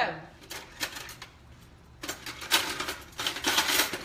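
Kitchen handling noise: a few light clicks, then about two seconds of busy rustling and clattering in the second half.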